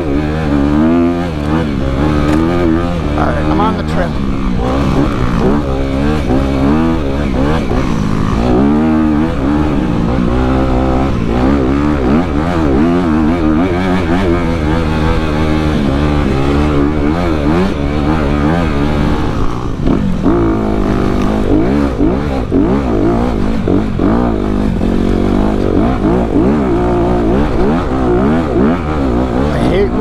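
2019 Honda CRF250RX dirt bike's 250 cc single-cylinder four-stroke engine ridden hard off-road, its revs rising and falling over and over with throttle and gear changes.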